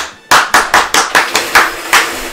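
Hands clapping in a quick, even rhythm, about five claps a second.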